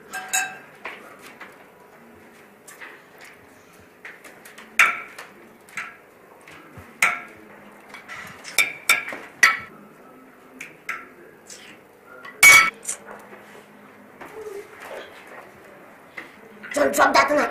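Forks and cutlery clinking against plates during a meal: a scatter of short, sharp clicks with one loudest clink about three-quarters of the way through.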